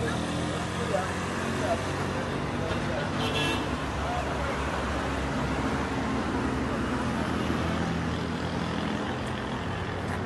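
Steady roadside traffic noise from a busy highway, with a low, even engine hum running throughout.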